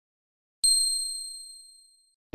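A single bright, high ding struck about half a second in, ringing cleanly and fading away over about a second and a half: the chime sound effect of an intro logo.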